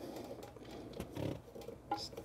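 Faint handling sounds of fingers hand-tightening a plastic coupling nut onto a toilet fill valve's threaded plastic shank, with a short click near the end.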